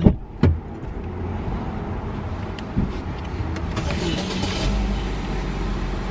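Car idling, heard from inside the cabin as a steady low rumble. There are two sharp knocks right at the start and a short hiss about four seconds in.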